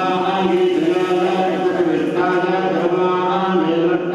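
Mantras being chanted on long held notes, sliding slowly between pitches over a steady low drone.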